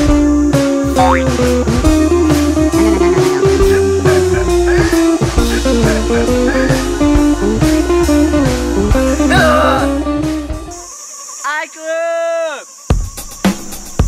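Comedic background music with guitar that stops about eleven seconds in. A short cartoon-style sound effect follows, a quick series of rising-and-falling tones, then a few sharp clicks.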